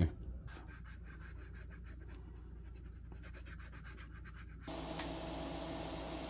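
A steel dip-pen nib scratching on notebook paper in quick, faint strokes. About three-quarters of the way through, this gives way to a steady faint hum and hiss.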